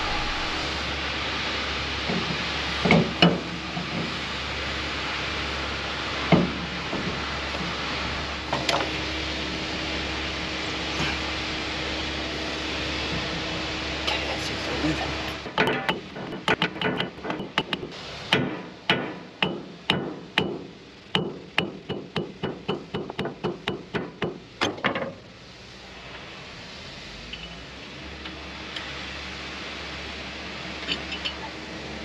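Hammer blows on metal, seating the hydraulic motor onto the anchor winch's worm drive shaft: a few single knocks over a steady background noise, then a run of about thirty sharp strikes, roughly three a second, over the second half that stop abruptly.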